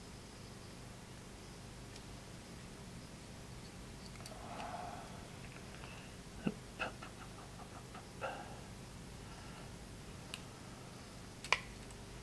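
Faint, scattered clicks and taps of small parts being handled: a plastic grip plate fitted to a Colt Mustang pistol frame and a screwdriver set to its grip screw, with a short run of small ticks a little past the middle and one sharper click near the end.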